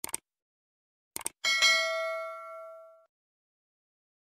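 Two quick mouse-click sound effects, then two more about a second later, followed by a single bright bell ding that rings out and fades over about a second and a half: a subscribe-and-notification-bell animation effect.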